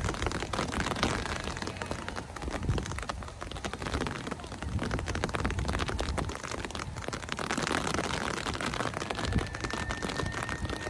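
Rain pattering close to the microphone in dense, irregular drops, over a low rumble of wind on the microphone.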